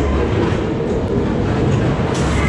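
Ghost train car rolling along its track: a steady, loud rumble of the running gear.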